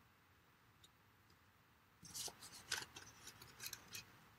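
Near silence, then from about two seconds in a run of small clicks and paper rustles as a Cookie Cutter Builder paper punch and black cardstock are handled.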